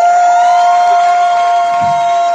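A woman singing one long, loud note through the club's PA, sliding up into it and then holding it steady, with a second voice or note joining just below it.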